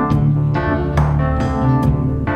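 Live-looped instrumental rock music: a keyboard playing sustained organ-like chords over a low bass line, with regular sharp percussive hits.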